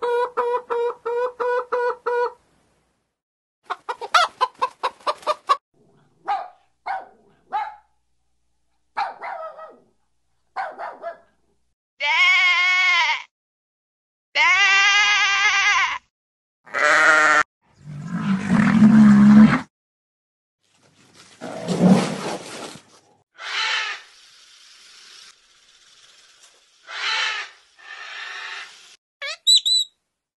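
A run of farm animal calls cut one after another with short gaps: short calls from chickens at first, then sheep bleating in long, wavering calls around the middle. A deeper, loud call follows a little later, with further short calls toward the end.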